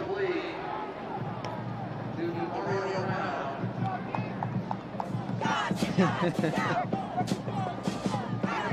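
A marching band playing under the noise of a large stadium crowd. The band grows louder and busier about five and a half seconds in.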